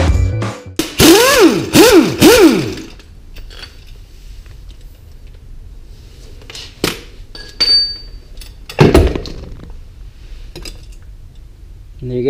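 Air impact wrench turning a harmonic balancer puller's center bolt: three short trigger pulls, each a whine that rises and falls, with the hiss of air. Then a few light metal clinks and one heavy metallic clunk about nine seconds in as the harmonic balancer is pulled free.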